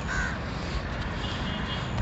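A crow cawing, a short call near the start and a longer higher one from about a second in, over a steady low rumble.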